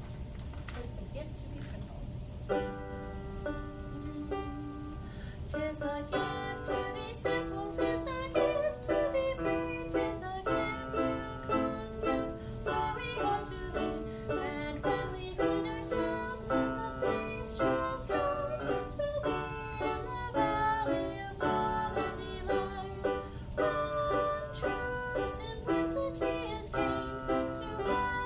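Music on a plucked string instrument: a single chord rings out about two and a half seconds in, then from about six seconds a steady rhythm of plucked notes and chords, each ringing briefly and fading.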